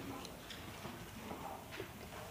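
Quiet meeting-room background with a few faint, short clicks and taps.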